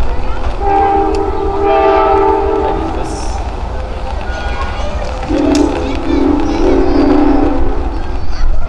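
Locomotive air horn sounding two long blasts, each a chord of several steady tones: the first about two seconds long, the second, slightly lower, about three seconds long near the end. A low rumble runs beneath.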